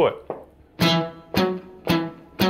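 Electric guitar picking a blues shuffle, with three sharp picked notes about half a second apart in a steady rhythm. The higher note falls on the downbeat as a downstroke.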